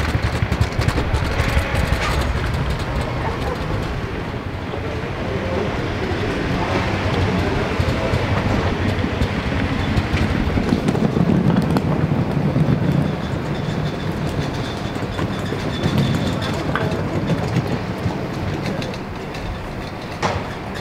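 Loaded luggage trolleys rolling over pavement, their wheels and wire frames rattling continuously.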